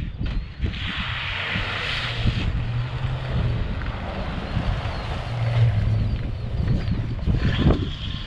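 A 1993 Ford Explorer's 4.0-litre V6 engine and tyres as it drives past, the sound swelling as it nears and passes about halfway through, with wind on the microphone.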